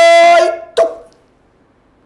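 A man's voice holding one long, loud, steady-pitched shouted vowel that breaks off about half a second in. A short second call follows, then a pause with only room tone.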